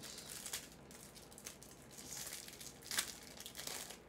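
Plastic packaging wrapper crinkling as it is handled, faint and irregular, with one sharper crackle about three seconds in.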